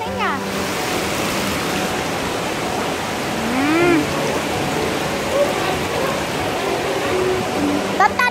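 River water rushing over rocks and falls in a travertine gorge, a steady, even rush of noise throughout. A short rising-and-falling voice sounds about halfway through.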